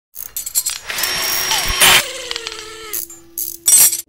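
Metalworking machinery: irregular mechanical clicks and clanks, then about a second of whirring, hissing tool noise, a falling tone that settles into a steady hum, and a loud burst near the end.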